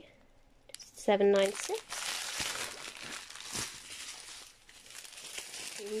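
Small plastic zip bags of diamond-painting drills crinkling as they are handled and shuffled, starting about two seconds in, with a few faint clicks. A short spoken word comes just before.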